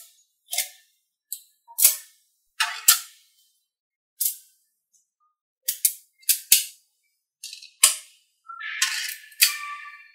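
Small metal magnet balls snapping together: about a dozen sharp, irregular clicks as rows and columns of balls are pressed onto a magnet-ball structure, with a longer rattling clatter near the end.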